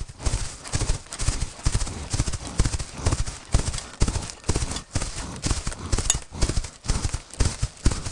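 Hooves of a herd of red deer walking on frozen, snowy ground: a steady, overlapping run of thuds, several a second. A brief high-pitched squeak about six seconds in.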